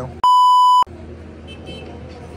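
A censor bleep: one steady, loud, high electronic beep lasting about half a second, starting a quarter second in, with all other sound muted beneath it. A low, even outdoor background follows.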